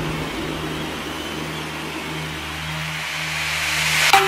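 Electronic dance music breakdown: a white-noise sweep over held low synth bass tones, with no drums. The sweep rises and brightens toward the end, building toward a drop.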